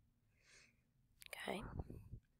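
Near silence, then a brief, quiet vocal sound from the narrator, whisper-like, starting about a second and a half in.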